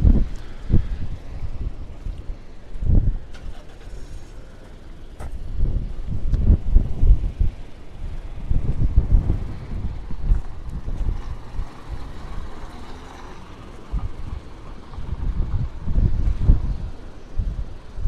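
Gusty wind buffeting the phone's microphone in repeated low surges that rise and fall, strongest from about six to ten seconds in and again near the end.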